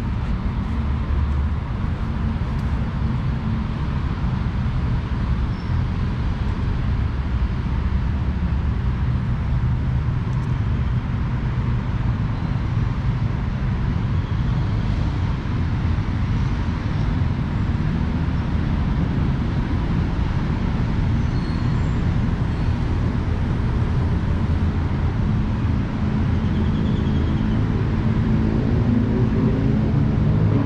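Steady low rumble of distant city road traffic.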